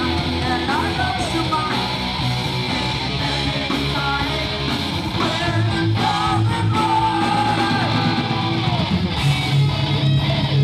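A live rock band playing: electric guitar over drums and bass, dense and steady throughout.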